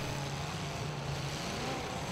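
Demolition derby car engine running steadily, a faint low drone under an even wash of noise.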